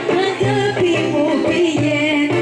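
Live Greek traditional folk band music with a singer's voice carrying an ornamented melody.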